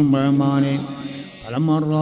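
A man's voice chanting an Islamic devotional invocation in a slow melodic line, holding one long steady note, fading briefly about a second and a half in, then starting the next phrase.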